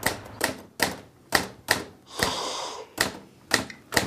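Manual typewriter being typed on slowly, with about nine sharp key strikes at an uneven hunt-and-peck pace and a short rasp a little past the middle.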